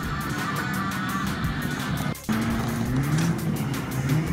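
Off-road 4x4 engines running under background music. After a short dropout about two seconds in, a Lada Niva's engine note rises and falls as it revs.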